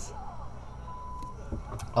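A short, steady high beep lasting under half a second, about a second in, over a low steady background hum.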